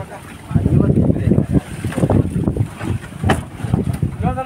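Low, uneven rumble of a fishing boat at sea with wind on the microphone and crew voices mixed in; a sharp knock about three seconds in.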